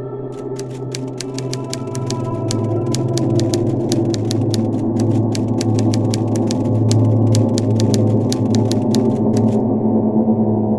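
Typewriter keystroke sound effect: a rapid, irregular run of sharp clicks over a low, steady music drone. The clicks stop shortly before the end while the drone carries on.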